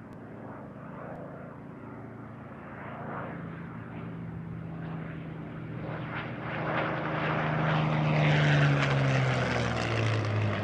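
Supermarine Spitfire's Rolls-Royce Merlin V12 engine on a close pass, growing steadily louder as it approaches. It is loudest about eight or nine seconds in, and its pitch drops as it goes by.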